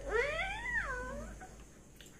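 A young girl's wordless, whiny, cat-like vocal cry, about a second long, rising then falling in pitch.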